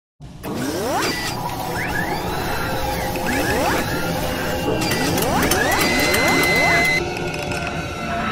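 Produced intro sound effects: mechanical clanking and ratcheting clicks mixed with a series of rising whooshing sweeps. It starts just after a moment of silence and changes about seven seconds in.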